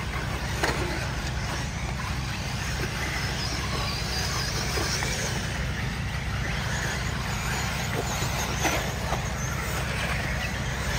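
Electric RC buggies racing on a dirt track: faint high-pitched motor whines rising and falling as the cars speed up and slow, with a few sharp clicks over a steady low rumble.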